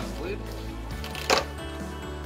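Background music playing, with one sharp clack of stiff clear plastic about a second and a quarter in as the blister-pack cover comes off the toy's display tray.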